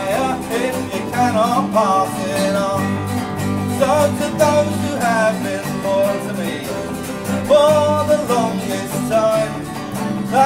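Live acoustic folk band playing between sung verses: strummed acoustic guitar over a steady bass guitar, with a melody line running above them.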